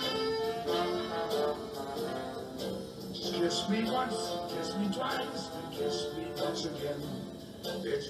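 Recorded early-style jazz band playing an instrumental introduction with horns and a steady beat, just before the vocal comes in.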